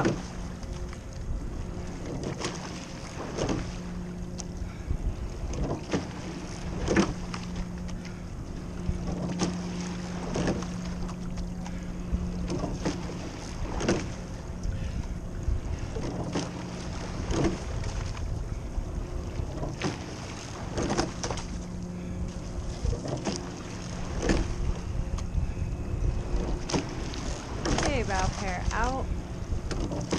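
Rowing shell under way at an easy paddle: oars knock in their oarlocks at the catch and release, a sharp knock every second or two, over water rushing along the hull and wind on the microphone. A steady low hum runs underneath.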